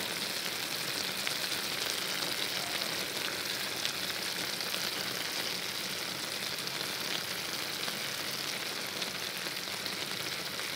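Eggplant and minced pork cooking in a stainless steel pot, sizzling steadily in its seasoned liquid.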